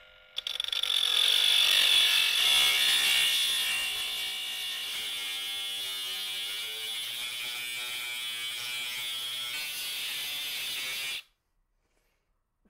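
Ridgid 18V subcompact brushless 3-inch multi-material saw cutting through a metal angle guide. The high whine is loudest for the first couple of seconds, then steadies, with the motor pitch wavering under load, and cuts off suddenly near the end.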